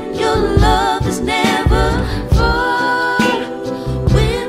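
A song with singing over low accompaniment. The voice wavers through short phrases, then holds one steady note for about a second in the second half.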